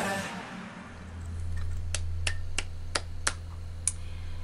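K-pop music fading out, then a low steady hum with six sharp, irregularly spaced clicks from about halfway through.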